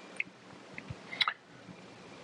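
A few faint, short clicks over a low steady hiss.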